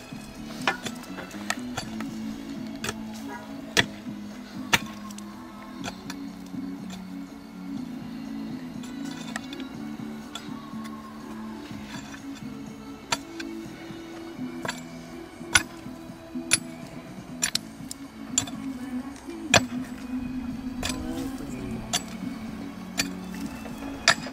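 Background music with a steady bass line, over which sharp clinks come at irregular intervals, a couple of them much louder than the rest: metal digging tools striking rocks in hard dirt.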